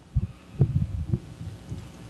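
A few low, dull thumps about half a second apart in the first second or so, over a low hum.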